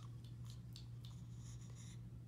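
Faint scratchy rustling with scattered soft ticks over a steady low hum; the rustling thickens in the second half.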